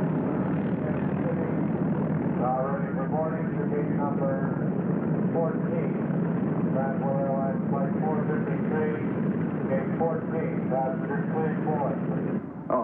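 Propeller airliner engines running steadily, with indistinct voices over them from about two seconds in.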